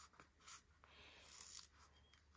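Faint scraping and rubbing of a pointed craft tool against cardstock as the edge of a glued paper layer is worked loose.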